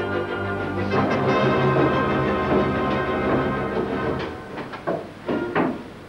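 Organ music, sustained full chords that die away about four seconds in, then a few sharp wooden knocks near the end.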